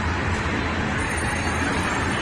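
Steady din of a busy indoor shopping mall: crowd hubbub over a low, even hum.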